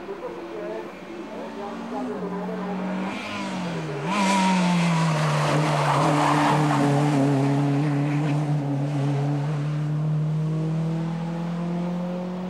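Renault Clio race car's engine, its note dipping and jumping a few times as the driver brakes and changes down for a tight bend. About four seconds in it gets louder and holds a steady, lower note through the corner, with a rush of tyre noise.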